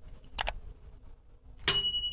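Mouse-click sound effect, a quick double click, then about a second later a single bright bell ding that rings on steadily: the sound effects of a subscribe-button and notification-bell animation.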